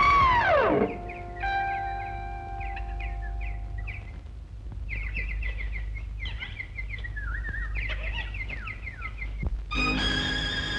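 An elephant trumpets once, a loud call that rises and then falls in pitch within the first second. Birds then chirp in quick, repeated falling notes over a faint held musical tone, and music swells back in at the very end.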